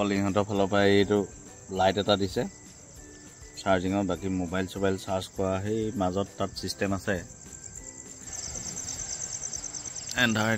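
Night insects keep up a steady, high-pitched chirring, with a rapid high trill coming in near the end.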